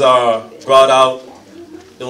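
A man's voice into a handheld microphone: two drawn-out vocal syllables, the second about three-quarters of a second after the first, then a pause.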